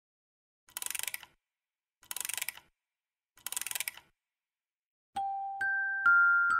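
Three short bursts of rapid clicking in a camera-shutter sound effect, spaced a little over a second apart. About five seconds in, background music with bell-like notes begins.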